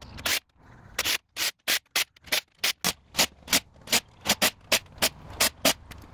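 A quick, even series of short scraping or rubbing strokes, about three a second.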